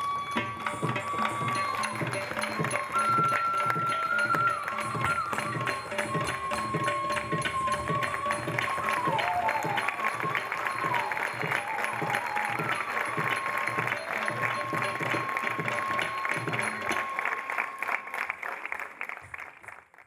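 Live Carnatic ensemble music: a held melodic line with sliding ornaments over a steady drum beat, fading out near the end.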